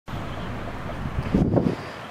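Wind buffeting the microphone: a steady, low rumbling noise that swells briefly in a gust about one and a half seconds in.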